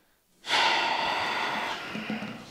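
A man's long, loud breath in close to the microphone, starting about half a second in and easing off near the end.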